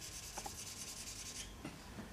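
Marker pen shading on flip-chart paper, a faint quick run of back-and-forth strokes that stops about three-quarters of the way through.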